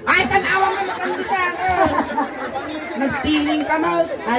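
Speech only: people talking into handheld microphones, with chatter around them.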